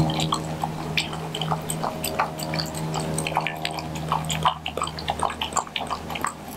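German shepherd mix lapping goat milk kefir from a plastic bowl: quick, irregular wet laps and splashes. A steady low hum runs underneath and fades out about four and a half seconds in.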